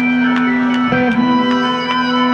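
Live rock band playing in an arena, recorded from the audience: a long held bass note under sustained guitar tones, with sharp regular ticks of percussion on top.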